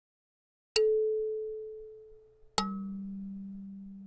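Two struck, ringing tones of an intro sting: a higher one less than a second in that fades away over about two seconds, then a lower one about two and a half seconds in that keeps ringing.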